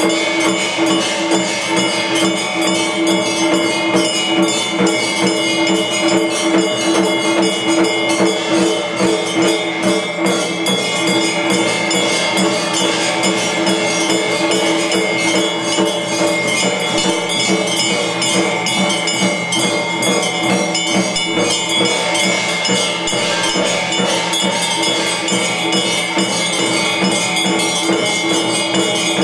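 Temple puja music accompanying an aarti: bells and jingling percussion ringing fast and continuously over steady sustained tones.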